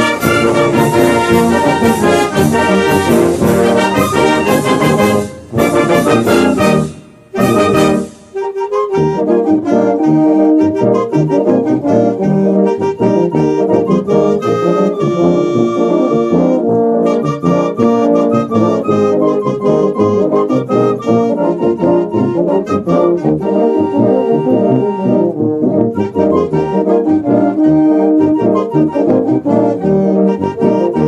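Brass band playing a son, trombones prominent among the brass. The music breaks off twice, briefly, about seven and eight seconds in.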